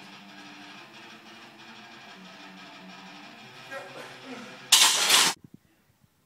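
Gym background of music and voices, then a loud noisy burst lasting about half a second near the end, after which the sound drops out.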